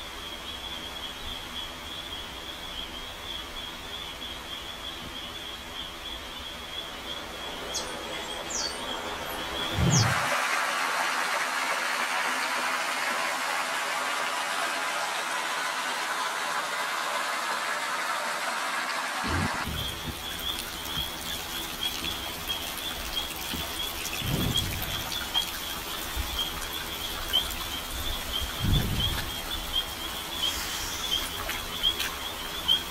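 A steady high-pitched insect chirring gives way, about ten seconds in, to the splash and rush of water from a small stone fountain pouring into a thermal pool. After about nine seconds the chirring comes back, and a few soft low thuds mark the changes and sound twice more near the end.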